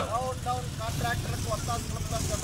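A person speaking, with a steady low rumble underneath.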